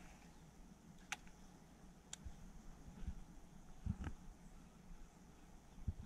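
Near quiet: a faint low background rumble with a few soft, short clicks about one, two and four seconds in.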